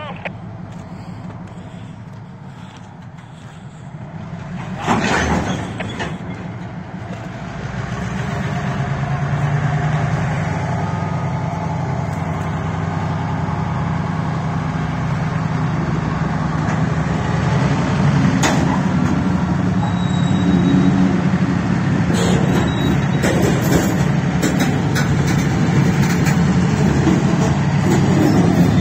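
Slow-moving freight train of covered hopper cars rolling past with its diesel locomotive running, the low engine drone building up and then holding steady. A sudden loud burst comes about five seconds in, and clicks and knocks from the wheels and cars grow more frequent over the last few seconds.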